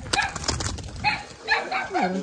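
A dog barking, a few short barks in the second half.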